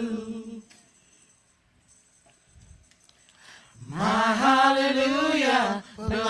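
Gospel singers singing unaccompanied into microphones. A held note fades out shortly after the start, there is a pause of about three seconds, and then the voices come in together on a new phrase near the end.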